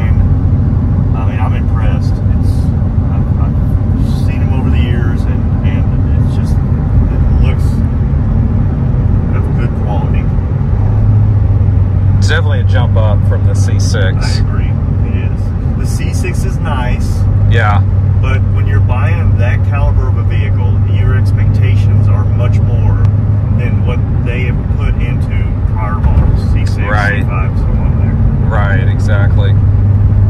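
Cabin drone of a C7 Corvette Z06's supercharged 6.2-litre V8 and road noise while cruising at about 55 mph. It is a steady low hum that grows stronger about 11 seconds in and again from about 17 seconds on.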